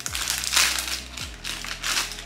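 Clear plastic packaging crinkling in bursts as a small packet of socks is torn open and handled, loudest about half a second in and again near the end.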